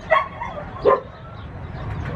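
A dog barking twice, two short barks a little under a second apart.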